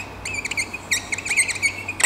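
Whiteboard marker squeaking on the board as a word is handwritten: a quick run of short, high squeaks whose pitch wavers up and down with each stroke.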